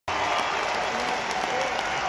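Large concert crowd applauding and cheering, a steady wash of clapping with scattered shouts.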